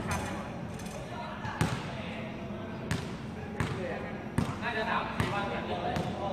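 Basketballs bouncing on a hard outdoor court: sharp slaps at uneven intervals, about one a second, over the murmur of players' voices.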